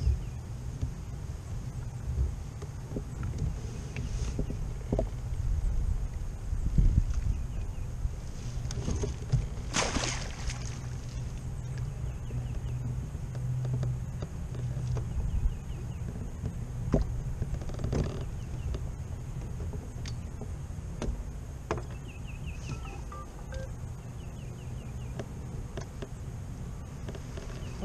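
Outdoor noise from a kayak-mounted camera: steady low wind noise on the microphone with scattered knocks of gear against the kayak, as a hooked fish is worked free of submerged brush. A short splash-like burst comes about ten seconds in.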